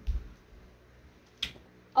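A light switch flicked off with one sharp click about one and a half seconds in, after a soft low thump near the start, in a quiet small room.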